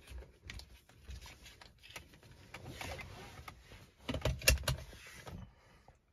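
Seatbelt being drawn across and buckled in a car cabin: faint rustling and small clicks, then a quick cluster of louder clicks and knocks about four and a half seconds in as the buckle latches.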